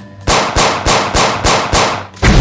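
A rapid series of about six pistol gunshot sound effects, evenly spaced at about three a second, starting a quarter second in.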